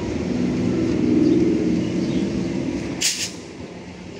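Indian Railways suburban EMU train passing at speed, its wheels and coaches loudest about a second in and fading as the end of the train goes by. A short, sharp hiss about three seconds in.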